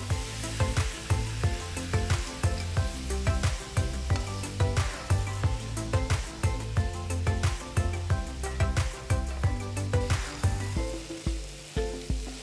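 Paneer cubes frying in a little oil in a non-stick pan on high heat, sizzling and crackling, while a wooden spatula stirs and scrapes against the pan. Background music plays along.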